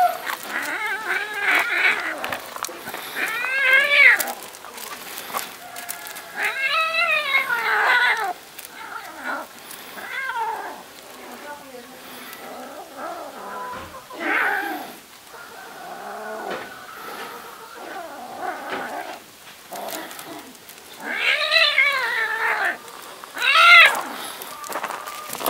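A cat yowling in repeated drawn-out, wavering cries while a puppy wrestles with it. The loudest cries come about 4 and 7 seconds in, and again near the end.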